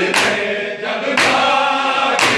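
A group of men chanting a noha together, punctuated by collective matam: many hands striking bare chests in unison about once a second, twice here.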